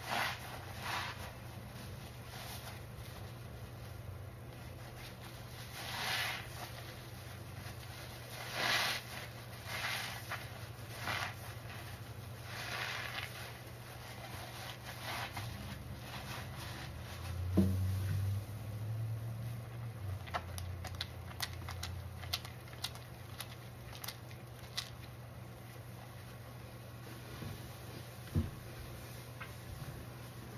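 Soapy kitchen sponges squeezed by hand in thick foam, giving repeated wet squelching swells, then a run of fine crackles and pops from the suds. A low hum and a single sharp knock come about two-thirds of the way through.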